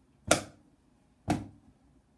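Two sharp clicks of wooden drumsticks struck together, about a second apart, in a steady one-per-beat rhythm that stands in for the hi-hat part of a basic rock beat.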